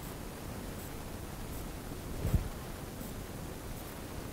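Steady low hiss of room tone in a lecture room, with one brief, soft low-pitched sound a little past halfway and faint high ticks under a second apart.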